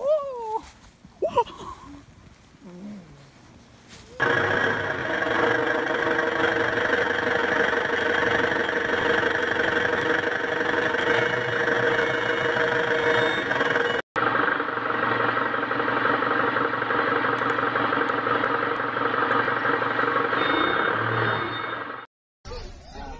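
A short voice sound sliding up and down in pitch, then from about four seconds in a heavy vehicle's engine running loudly and steadily, broken by a brief dropout about fourteen seconds in.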